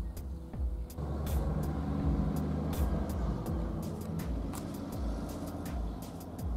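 A motor vehicle's low rumble that swells about a second in and carries on, with light ticks over the top, likely with background music underneath.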